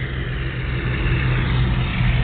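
A steady low engine hum runs throughout, with general outdoor background noise.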